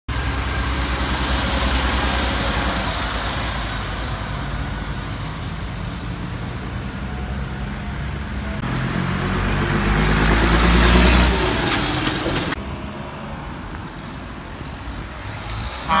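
Road traffic driving past at close range: engine rumble and tyre noise, building to the loudest pass of a heavy multi-axle tipper truck about ten seconds in, which drops away abruptly after about twelve seconds.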